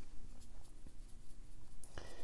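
A round watercolour brush working paint in a palette tray, a soft brushing scratch, with a light tap near the end.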